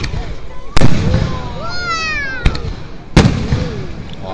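Aerial firework shells bursting overhead: three sharp bangs, the loudest a little under a second in, each with a rumbling tail. Spectators' voices carry on underneath, and a high falling whistle sounds in the middle.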